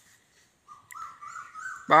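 A high whine that rises in pitch in short pulses over about a second, then a man starts speaking near the end.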